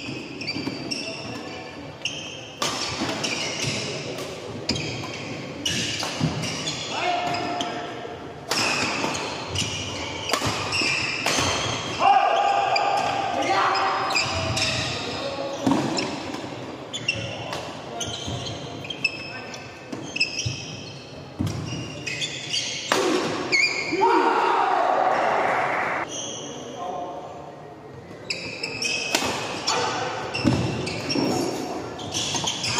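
Doubles badminton rally in a reverberant hall: the shuttlecock is struck sharply by rackets again and again, shoes squeak on the court floor, and players' voices call out at times.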